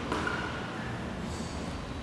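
Low, steady background hiss of room noise, with no distinct event.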